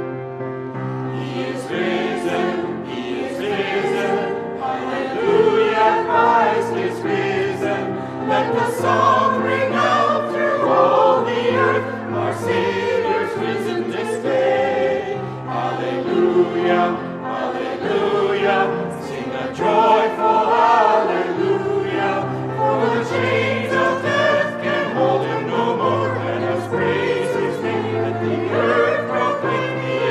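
Mixed church choir of men's and women's voices singing with piano accompaniment; the voices come in about a second in after the piano.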